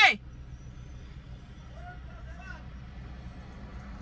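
Steady low hum inside a stationary car, its engine idling. A faint, distant voice is heard about two seconds in.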